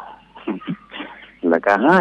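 A man speaking Thai on a radio programme, with a pause of about a second and a half that holds a few short faint sounds before his speech resumes.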